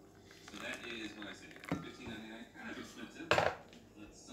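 Kitchenware knocking on a counter: a light knock a little under two seconds in, then a louder, brief clatter about a second and a half later, under faint background speech.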